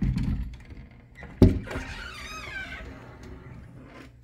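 Wooden bifold door, on a new spring-loaded top pivot, being folded open in its top track. A rumble as it starts to move, a sharp knock about a second and a half in, then a brief wavering creak.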